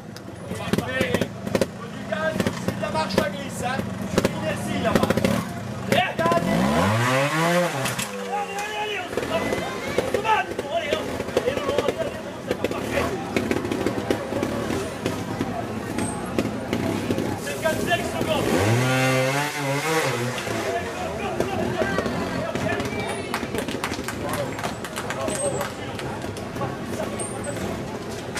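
Trials motorcycle engine running and being revved as the rider climbs over rocks, with two big throttle blips about seven and nineteen seconds in where the engine note rises and falls back.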